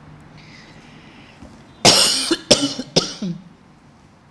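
A woman coughing: one loud cough just under two seconds in, followed by two shorter coughs.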